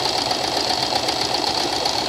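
Domestic sewing machine running steadily, stitching a tight, short zigzag along a fabric edge as a mock-overlock finish.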